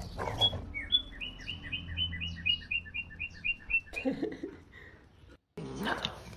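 A bird chirping: a fast, even series of short high chirps, about five a second, lasting about three seconds.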